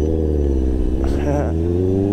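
Honda CBR650R's inline-four engine under way, its pitch climbing steadily as the motorcycle accelerates.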